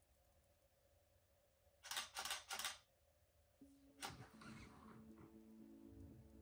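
A camera shutter firing three times in quick succession about two seconds in, over near silence. Soft music with held notes comes in a little past halfway, with a brief hiss about four seconds in.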